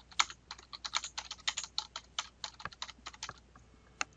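Typing on a computer keyboard: a quick, uneven run of keystrokes that stops about half a second before the end.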